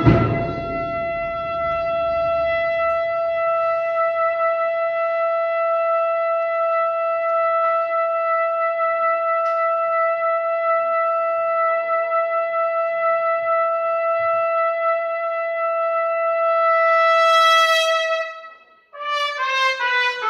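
A full brass band chord cuts off, leaving one long brass note held with a swell near the end. After a brief break, a quick falling run of notes follows in a Spanish processional march played by a cornet-and-brass agrupación musical.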